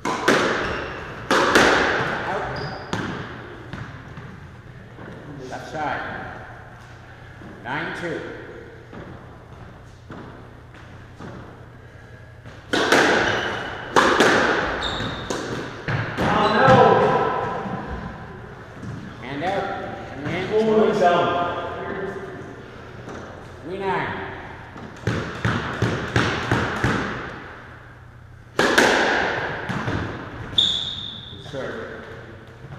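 Squash rally: the hard rubber ball smacked by racquets and hitting the walls and floor, sharp impacts at irregular intervals, each echoing around the enclosed court.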